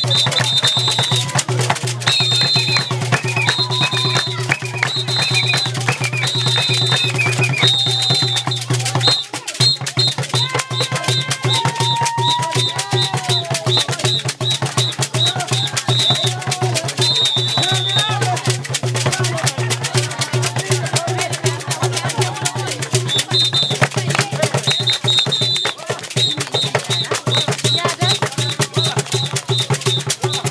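Hand drum played in a fast, driving rhythm for dancing, with short shrill high-pitched notes repeated over it in quick runs and voices calling out over the music.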